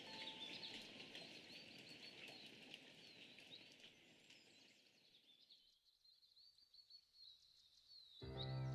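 Faint birdsong, many short chirps and trills, over the last of soft music dying away. The low musical part falls away about five and a half seconds in, leaving only the faint chirps.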